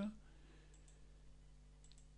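Two or three faint computer mouse clicks over a steady low hum.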